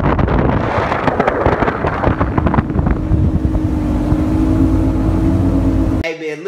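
Heavy wind buffeting a phone microphone on a fast-moving boat. A steady motor drone comes in about halfway through.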